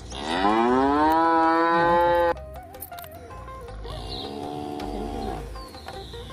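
A cow mooing twice: a loud moo of about two seconds that rises at the start and cuts off sharply, then a quieter, shorter moo.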